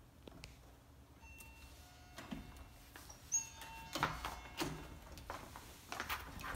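Electronic hotel-room door lock playing its short unlocking chime of beeps at several pitches from about a second in. A sharp click follows, then the knocks and clatter of the door being opened.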